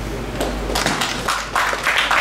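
Audience applause starting up: a few scattered claps about half a second in, thickening into steady clapping toward the end.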